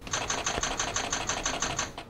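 Panasonic GH5 mirrorless camera firing a burst on electronic shutter: a rapid, even run of shutter clicks, about ten a second, that stops shortly before the end. The camera keeps shooting the burst while powered from a USB power bank through a dummy battery, without shutting down.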